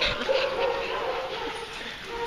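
Dogs barking and yipping, with a drawn-out whining tone held underneath.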